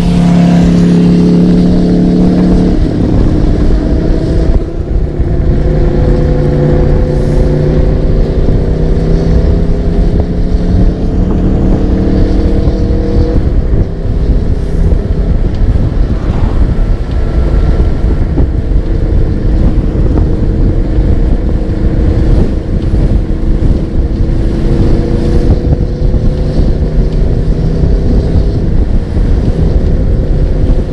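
A 3000 W 48 V electric bike's motor whining as it rides along, its pitch climbing slowly as speed builds, over steady wind and road rumble.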